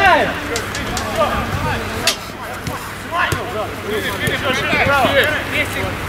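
Football players shouting to each other across an outdoor pitch, with a sharp thud of a ball being kicked about two seconds in.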